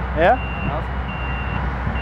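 Low, steady diesel drone of heavy farm machinery, with a Fendt 824 Vario tractor close by. Over it a high, single-pitched reversing-alarm beep sounds three times, each beep about half a second long.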